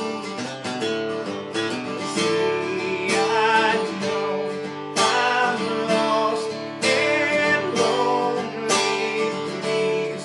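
Acoustic guitar strummed in a steady rhythm, with a man's voice singing over it in several sustained phrases.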